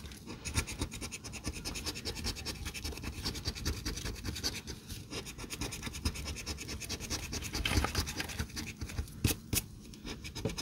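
A gold coin scratching the coating off a paper scratch-off lottery ticket in quick, repeated strokes. Near the end come a couple of sharper clicks.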